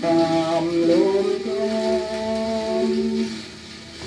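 A Columbia shellac 78 rpm record of an old Thai song playing on a vintage record changer: long sustained notes over faint surface hiss, wavering at first, then held steady, before the sound falls away near the end.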